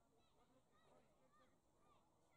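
Near silence, with faint, short, repeated distant calls.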